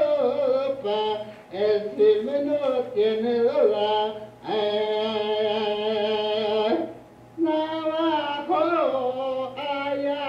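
Archival 1950 field recording of a man singing an unaccompanied indita in Spanish words, Navajo words and vocables, played back over a loudspeaker with a steady low hum under it. The voice slides between notes, holds one long note for about two seconds midway, and breaks off briefly near the three-quarter mark before going on.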